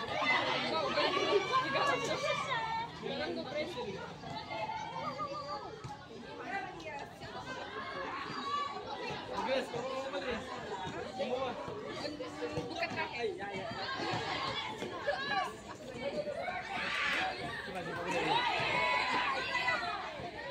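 Many overlapping high voices chattering and calling out at once, with no single clear speaker; the calls grow louder near the start and again near the end.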